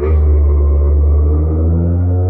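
Loud, steady low mechanical drone of a power tool running nearby, its pitch holding steady with a faint rising whine above it. It sounds like drilling into the wall below.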